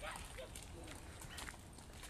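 Footsteps on a gravel road: quiet, irregular crunching steps.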